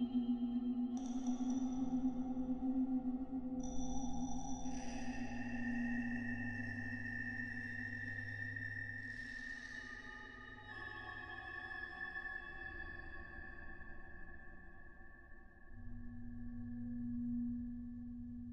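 Ambient electronic music from a Mutable Instruments modular synthesizer: layered sustained tones over a low drone, with new notes coming in every few seconds and the high ones fading away late on.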